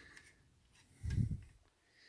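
A short low hum from a person's voice about a second in, with a faint click of the die-cast and plastic model pickup being handled just before it.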